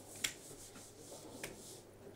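Marker drawing on a whiteboard: faint rubbing strokes, with a sharp tap soon after the start and a weaker one about one and a half seconds in.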